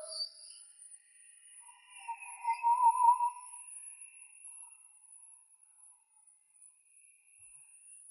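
Mostly quiet track with faint, watery leftovers of a live rock band filtered out of an isolated vocal track. A brief wavering tone swells and fades about two to three seconds in, over a thin, steady high hiss.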